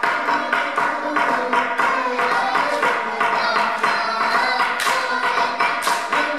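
Group chanting a Tongan otuhaka song to quick, steady clapping, about four to five claps a second.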